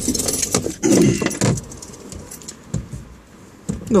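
A bunch of car keys jangling as they are handled, a quick rattle of light metallic clicks over the first second and a half, followed by a few soft knocks.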